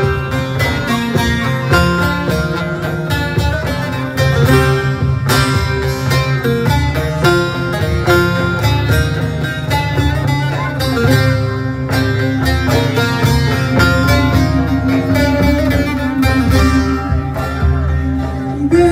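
Instrumental introduction to a Turkish folk song played live on plucked long-necked lutes (bağlama), a quick run of picked notes over a steady low part, before the singing begins.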